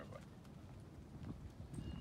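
Faint footsteps and a Doberman's claws tapping on a concrete driveway as the man and dog walk, with low wind rumble on the microphone.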